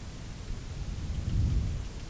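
Low, steady rumbling background noise with no distinct events, swelling slightly about a second in.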